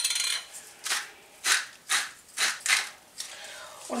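Hand-turned salt mill grinding coarse salt over a bowl of chopped cabbage: a dense crackly grind at first, then a series of short grinding bursts about half a second apart.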